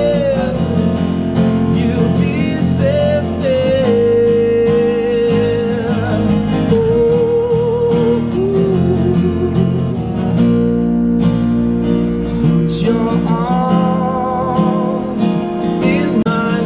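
A Filipino pop-rock band song playing: a sung melody with vibrato over guitars and a full band accompaniment.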